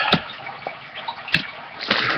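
Trading cards and foil pack wrappers being handled: uneven rustling and crinkling, with two sharp clicks, one just after the start and one past the middle.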